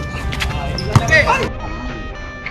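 Live basketball game sounds: a ball bouncing on a hard outdoor court with players' shouts, a sharp knock about a second in. About halfway through, background music with steady held tones takes over.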